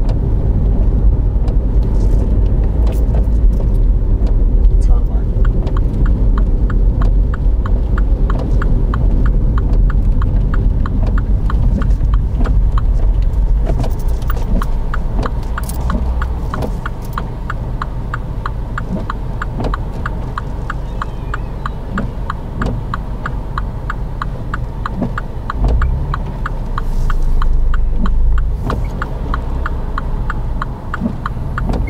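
A car's turn-signal indicator ticking steadily over the low hum of the engine idling inside the cabin, while the car waits to turn into a junction. The ticking starts about five seconds in.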